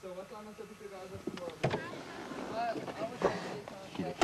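Low, indistinct voices inside a car, with two sharp clicks about a second and a half in and again near three and a quarter seconds.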